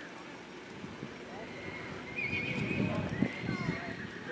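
A horse whinnies for about a second and a half, starting a little over two seconds in.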